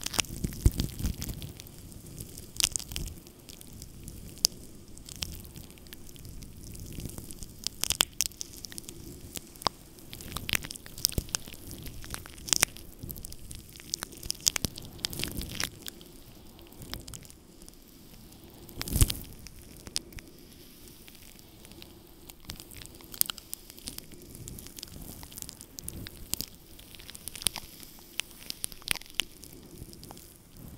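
Glass facial ice globes rubbed and pressed against a furry microphone windscreen close to the mic, giving a continuous irregular crackling of fur with scattered sharp clicks. A louder rubbing burst comes about two-thirds of the way through.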